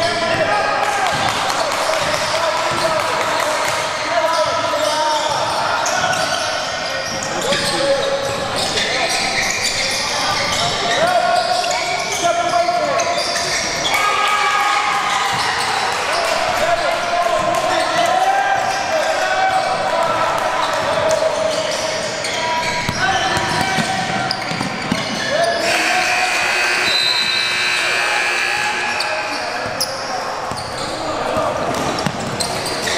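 Basketball bouncing on a hardwood gym court during play, mixed with unclear voices of players and spectators, echoing in a large gym hall.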